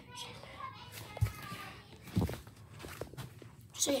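Faint children's voices in the background, broken by two short dull thumps about a second apart, the loudest sounds here; a child starts speaking again at the very end.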